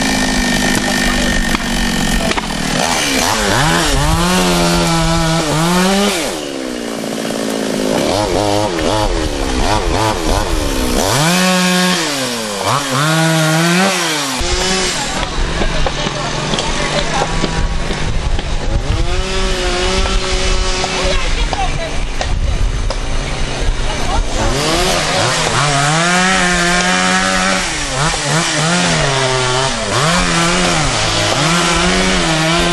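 Petrol chainsaw cutting up fallen tree trunks. Its engine revs up and drops back again and again, the pitch climbing and falling with each cut, with steadier idling stretches between.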